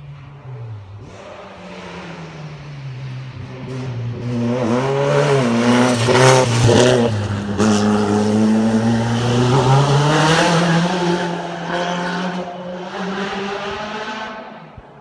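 A race car's engine at full throttle on a hillclimb run. Its note grows loud as the car approaches and passes, rising in pitch as it accelerates, with a brief drop about six seconds in at a gear change, then fades as the car drives away up the hill.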